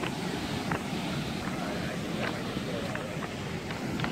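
Surf breaking on a cobble beach, a steady rush of water, with scattered sharp clacks of rounded stones knocking together.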